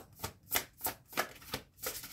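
A large deck of tarot cards shuffled overhand by hand, the cards slapping together in short strokes about three times a second.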